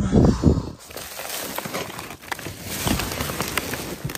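Loud thumps in the first second, then steady rustling and crackling of plastic bags and cardboard boxes being shifted by hand.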